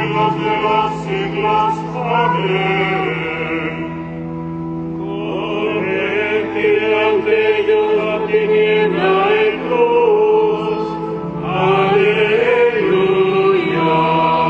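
Sung liturgical chant: a voice singing a slow melody with vibrato over steady held low notes, the low notes shifting twice.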